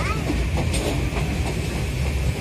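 Passenger train running at speed, heard from aboard: a steady low rumble of wheels on the rails.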